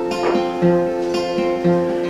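Acoustic guitar playing alone between sung verses: ringing chord notes with a low bass note picked about once a second.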